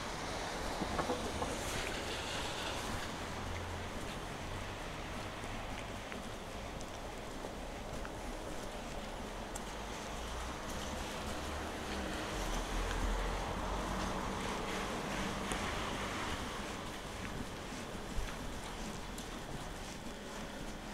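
Wind buffeting a handheld camera microphone, an uneven low rumble over a steady outdoor hiss, with one short click near the end.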